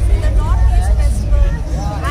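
A woman talking, with a heavy, steady low rumble underneath and some outdoor crowd chatter.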